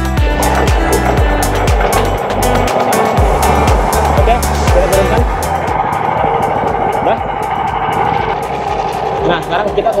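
Background music with a steady beat that fades out about halfway. Under it, and on after it, a Firman SFE460 18 HP four-stroke single-cylinder boat engine runs steadily as it drives a longtail fishing boat.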